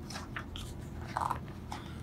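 Page of a hardcover picture book being turned by hand, a few short, faint paper rustles and taps over a low, steady room hum.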